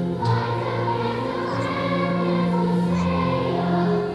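A large children's choir singing a song together, holding sustained notes.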